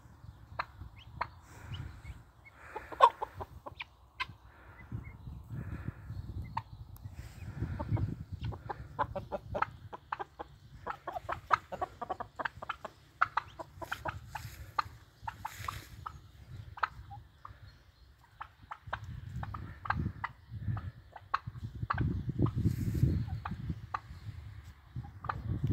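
A flock of domestic chickens clucking, many short calls in quick succession, busiest in the middle stretch, over an on-and-off low rumble.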